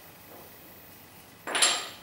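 A piece of metal debris from a blown-up engine scraping and clinking on a concrete floor as it is picked up, once about one and a half seconds in, with a short high metallic ring.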